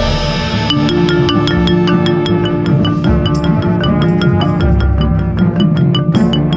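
Marimba played with yarn mallets in rapid, evenly spaced strokes, a quick running line of notes. Other instruments hold sustained chords underneath.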